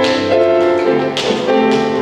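Grand piano playing an instrumental passage, with sharply struck chords about the start and again about a second in.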